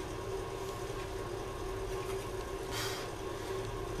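Steady low electrical hum, with one brief soft hiss about three seconds in.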